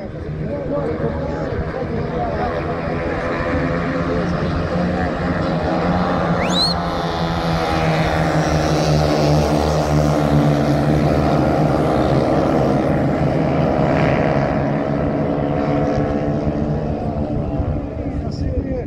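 Small engines of several minimidget dirt-track race cars running together at speed. They grow louder toward a peak about halfway through as cars pass close by, then ease off slightly.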